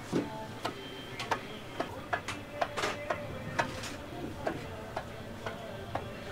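Small metal cup cutter pressed repeatedly through rolled sugar-candy dough onto a floured worktop, tapping about twice a second, some taps with a short metallic ring.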